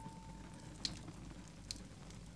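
Faint crackle of a hearth fire, a soft hiss with two small pops. The last held music note fades out at the very start.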